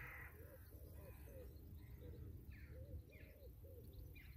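Faint calls of distant birds: a quick series of short repeated calls, with a few fainter, higher calls among them, over a low steady rumble.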